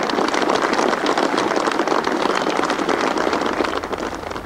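Golf gallery applauding, dying away near the end.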